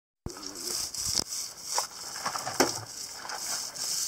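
Irregular scraping and crinkling strokes as epoxy is worked by hand onto a fiberglassed boat keel, over a steady high hiss.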